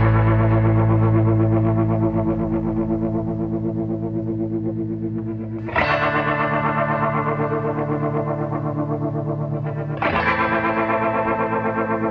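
Background music: sustained electric guitar chords with distortion and effects, each slowly fading with a fast ripple in loudness. A new chord is struck about six seconds in and another near the end.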